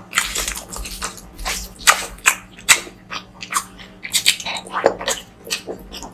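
Close-miked mouth sounds of eating curry with rice by hand: biting and wet chewing, with irregular sharp clicks a few times a second.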